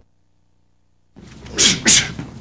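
Silence for about the first second, then a single short, loud cough from a person, in two quick pushes.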